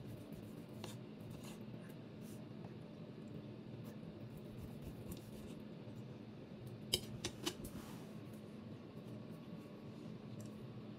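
Table knife and fork cutting food on a ceramic plate: faint scraping, with a few sharp clinks of metal on the plate, the loudest about seven seconds in.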